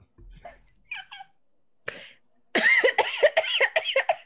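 Laughter: a few faint breaths and chuckles, then a loud run of rapid, pulsing laughs over the last second and a half.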